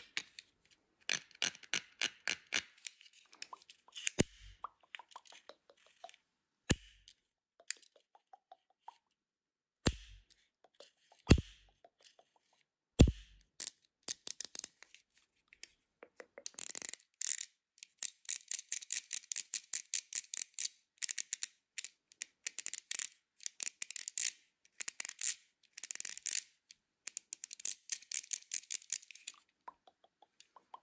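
Plastic fidget pad being clicked and rolled by hand: quick runs of small clicks, a few louder single snaps in the first half, then long stretches of rapid clicking from about halfway on.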